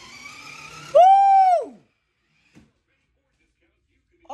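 A single high-pitched, drawn-out vocal exclamation like 'whoa' or 'ooh', about a second in, rising then falling in pitch and lasting under a second.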